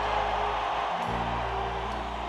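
Live band playing an instrumental concert overture, with held bass notes that shift to a new chord about a second in.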